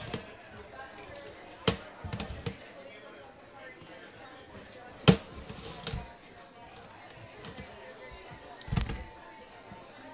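A few sharp knocks and thuds, the loudest about five seconds in, each followed by a short clatter, over faint background voices.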